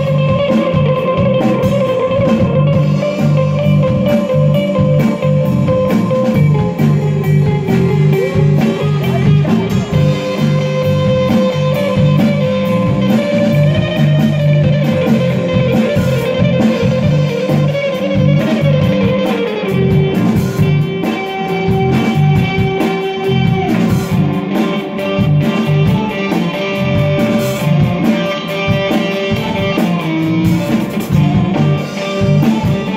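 Live band playing an instrumental passage: two electric guitars, bass guitar and drum kit, with a lead guitar holding long sustained notes that shift to a new pitch every few seconds over a steady drum beat.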